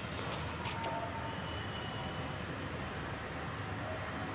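Steady background noise with no distinct events, and a few faint, short high tones about a second in and in the middle.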